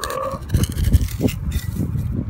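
Steel hand digger stabbing and cutting into dry, grassy soil: a run of irregular low thuds and scrapes.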